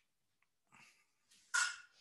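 A dog barking once, short and sharp, about one and a half seconds in, after a softer sound, picked up through a participant's microphone on a video call.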